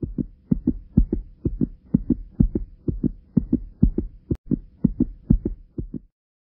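Fetal heartbeat heard through a Doppler monitor's speaker: a fast, even train of soft beats over a faint steady hum, with one sharp click about four seconds in. The mother calls the heartbeat normal.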